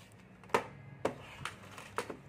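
Wall power-point switch clicked on, a single sharp click about half a second in, followed by a few fainter clicks.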